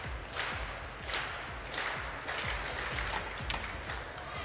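A high jump attempt in a reverberant indoor arena: soft thuds of the run-up recurring every half second or so, then a sharp knock near the end as the jumper meets the bar and lands on the foam mat, a failed attempt with the bar knocked off.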